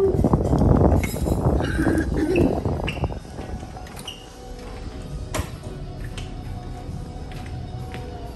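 Wind rumbling on the phone's microphone, mixed with handling noise, for the first three seconds. Then steady background music with a few light clinks.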